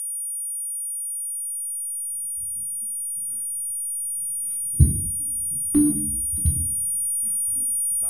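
A steady, piercing high-pitched sine tone, like ringing in the ears, starts abruptly and holds throughout. Low, muffled thumps come in under it from about two seconds in, the loudest about five and six seconds in.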